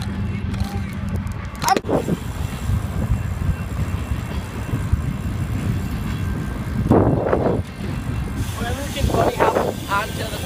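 Wind rushing over a phone's microphone while riding a bicycle along the road, a steady low rumble, with short bits of voices about two seconds in, around seven seconds and near the end.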